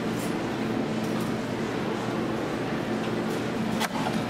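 Steady hum of a soda fountain and store equipment, with a few light clicks and rustles as a paper cup is pulled from a cup dispenser. Just before the end comes a sharp click as the fountain valve is pushed and the drink begins to pour.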